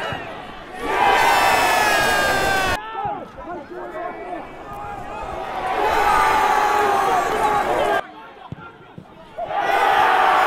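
Football crowd cheering and shouting as goals go in, in three loud surges cut abruptly one into the next, with a quieter stretch of shouting between.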